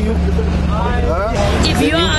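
People's voices talking over a steady low rumble, with one voice rising sharply in pitch about a second in.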